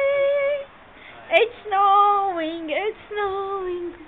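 A high voice singing in Arabic: a held note at the start, then two longer phrases of lower, wavering notes that dip and slide.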